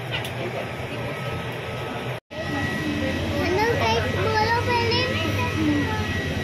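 Indistinct voices over a steady low hum, with a brief dropout about two seconds in. After it, a child's voice rises and falls over the steady hum of an aircraft cabin.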